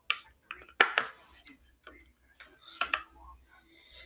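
Hard plastic phone case clicking and snapping as fingers pry at it to pull it off the phone: a few sharp clicks, the loudest about a second in and near three seconds.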